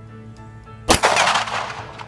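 A single shot from a Smith & Wesson M&P 9 mm pistol about a second in: one sharp crack whose report rolls on and fades over nearly a second.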